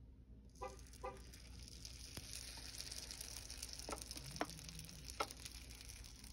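Fermented dosa batter sizzling on a hot ridged grill plate as it is spooned on. The sizzle starts about half a second in and runs on, with a few light clinks and scrapes of the metal spoon on the ceramic bowl.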